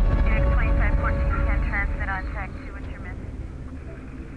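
Police radio chatter, a thin, narrow-band voice talking in short bursts, over a low rumble. The radio voice stops about two and a half seconds in, and the rumble fades away toward the end.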